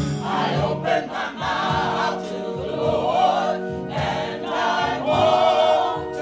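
A mixed choir of men and women singing a gospel song in full voice, with sustained low accompanying tones beneath the voices.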